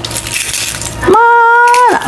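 Dry garlic skins crackling as cloves are peeled by hand. About a second in, this gives way to a woman's voice holding a long, level "ma" for nearly a second.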